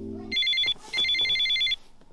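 Telephone ringing: two rings of a rapidly trilling electronic tone, the second starting about a second in.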